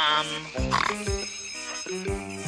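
Cartoon soundtrack: a short pitched cry that falls in pitch, then underscore music with steady notes over a low, regular pulse about twice a second.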